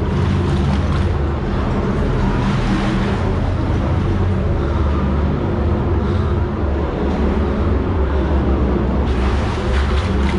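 Water jetting into a ship's ballast tank through a leak, a strong steady rush, over the steady low drone of the ship's machinery.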